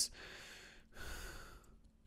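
A man's soft breathing at close range: two breaths, the second starting about a second in.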